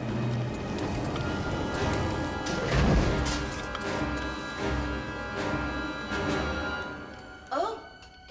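Orchestral film score with held tones over low pulses and a heavy hit about three seconds in; it quiets toward the end.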